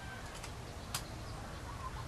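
A single sharp click about a second in as a screwdriver turns a light fixture's metal ground screw, over faint steady background. The tail end of a bird's call fades out at the very start.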